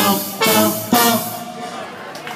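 Live funk band with trumpet and trombone, electric guitar and drums playing three sharp accented hits about half a second apart, the last one dying away.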